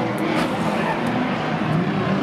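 Engines of banger race cars running in a steady, loud din, with a few faint clicks as the cars make contact.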